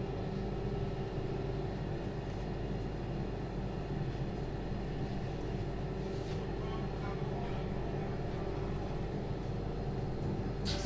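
Steady low machine hum made of several constant tones, with a few faint light taps about six seconds in.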